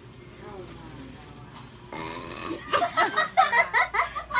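A person burps about halfway through, then laughs in quick, choppy pulses.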